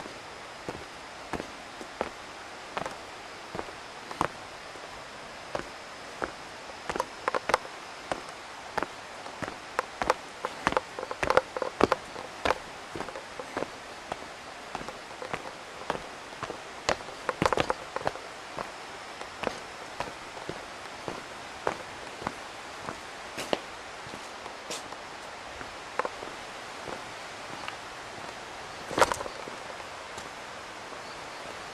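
Footsteps on a stone-paved path, irregular sharp steps that come thicker and louder in the middle and again near the end, over a steady outdoor hiss. A faint, thin high tone runs through the first third.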